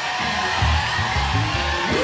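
Live church band music: sustained chords held steady, with a rhythmic bass line coming in about half a second in.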